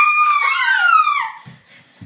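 A girl's loud, high-pitched scream, lasting about a second and a half and sliding down in pitch as it fades, followed by a couple of soft thumps.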